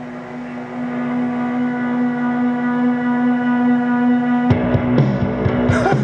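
Rock music played from a vinyl record on a turntable, a heavy stoner-rock sound. A single sustained guitar chord swells in and is held, then about four and a half seconds in the bass and drums come crashing in.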